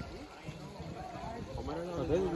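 Indistinct voices of people talking nearby, louder toward the end, over a low background rumble.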